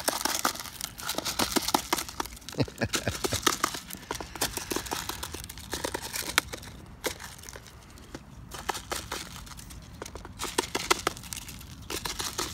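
Mute swan feeding from a plastic tub of seeds: its bill knocks and scoops through the grain, making rapid, irregular clicks and rattles against the plastic.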